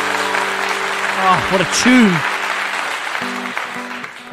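Crowd applause and cheering with a couple of short whoops about a second in, fading near the end. The last electric-guitar chord of the song rings under it at first.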